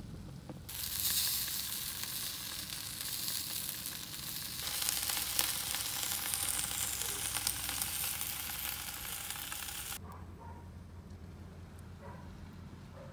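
Sizzling and hissing on a hot grill, with small pops. It starts about a second in, changes character partway and stops abruptly near the end.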